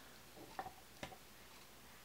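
Near silence with two faint clicks, about half a second and a second in, from fingers working deep conditioner down a strand of hair.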